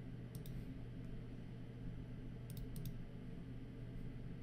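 Computer mouse clicks: two sharp clicks about half a second in, then a quick run of four about two and a half seconds in, over a steady low hum.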